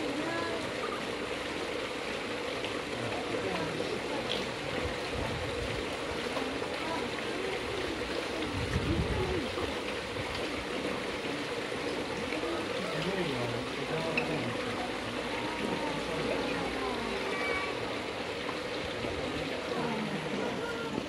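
Steady trickle of running water through a shallow rocky stream pool, with people talking in the background.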